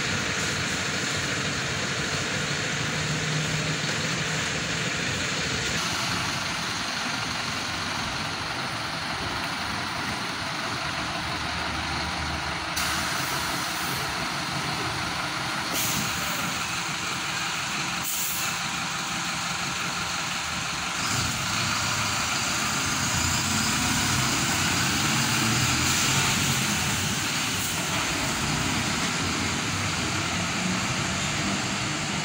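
Bus engine running as the bus moves slowly through the station, with short hisses of air from its air brakes several times around the middle.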